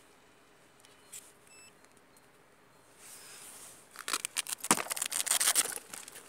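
Hands stripping and cleaning a bare optical fiber: faint clicks and a short high beep, then, from about four seconds in, some two seconds of loud rapid crackling and scratching.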